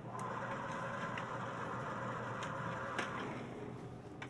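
A steady mechanical hum with a few light clicks as a shop's glass-door drinks cooler is pulled open; the hum starts as the door opens and fades out a little before the end.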